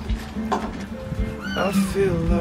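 Background guitar music, with a kitten's high mew falling in pitch near the end.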